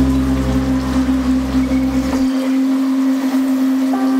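Downtempo psybient electronic music: a steady synth drone over a hissing noise texture, with a deep bass note that drops out a little over two seconds in.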